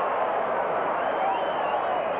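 Football stadium crowd noise: a steady din of many voices shouting at once.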